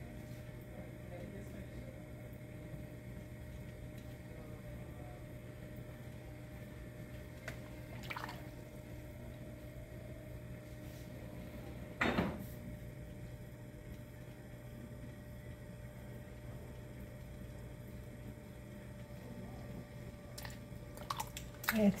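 Electric potter's wheel running steadily with a low hum, with soft wet sounds of clay being worked under the hands as a bowl is opened from the inside. Two brief sharper sounds stand out, about eight and twelve seconds in.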